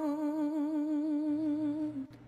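Background song: a singer holds one long note with an even vibrato, cutting off near the end.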